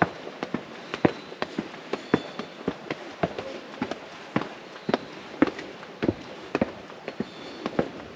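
Footsteps climbing stone steps: sharp, irregular taps and scuffs of shoes on granite, about three a second.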